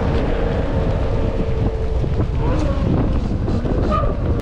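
Heavy wind buffeting on an action camera's microphone while riding an electric mountain bike at speed, with a steady hum that fades out a little past two seconds in.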